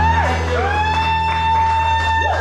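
Live rock band holding out a long closing chord over a steady low note, while a lead instrument plays sustained notes that bend up and down in pitch.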